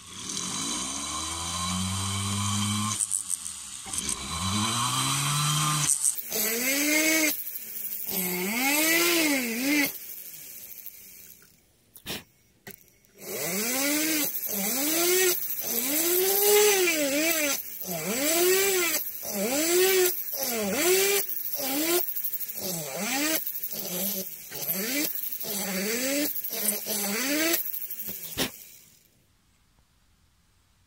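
Hand-held rotary tool with a small bit drilling small holes into the aluminium wall of a Piaggio Ciao crankcase, to give the filler something to grip. The motor winds up at the start, then its pitch rises and falls again and again in short swells about a second apart, with a brief stop about twelve seconds in, before it cuts off near the end.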